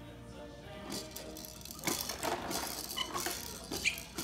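Electronic tune from a baby activity centre's toys, with plastic clicks and rattles as the toys are handled from about two seconds in.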